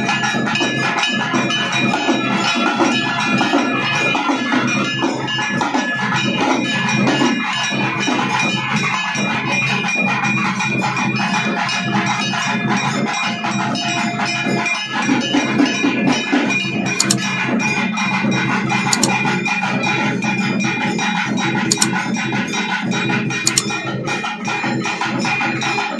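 Traditional Tamil temple melam: drums beaten in a fast, unbroken rhythm, with high held notes sounding over them.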